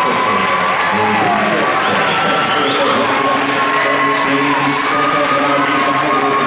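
Crowd of swim-meet spectators and teammates cheering and yelling at the finish of a swimming race, many voices overlapping at a steady, loud level.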